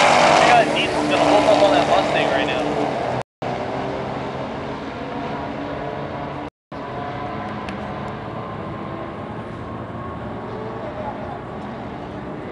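Drag-racing car engines running, with people talking nearby. The sound is louder in the first few seconds and cuts out briefly twice.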